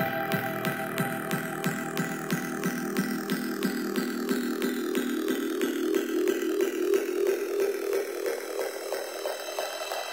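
Breakdown in a progressive psytrance/techno track, with no kick drum or deep bass. A quick, even clicking pattern runs under held synth tones in the midrange, while a high sweep slowly falls in pitch.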